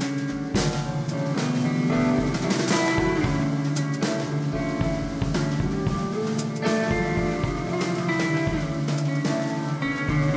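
Live rock band playing an instrumental passage: electric guitars holding ringing chords over a drum kit, with a loud cymbal crash about half a second in and further cymbal hits after it.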